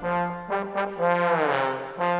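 Concert band trombones play a held note, then a downward slide glissando through the second second.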